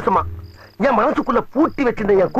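Film dialogue speech, with a short high cricket chirp in a pause about half a second in. The chirp repeats every second and a half or so as background ambience.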